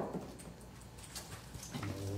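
Quiet room tone with a few small taps and clicks, the sharpest one right at the start. Near the end a person starts a low hummed "um".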